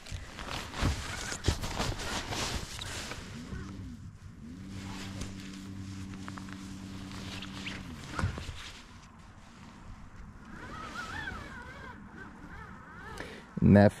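Knocking and clatter of gear being handled on a boat deck, then an electric trolling motor spinning up, running steadily for about three and a half seconds and spinning down as the boat is repositioned over the fish. Faint warbling calls follow near the end.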